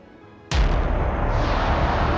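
Near quiet, then about half a second in a sudden deep boom that opens into a sustained heavy rumble: the dramatic intro music of a TV weather segment.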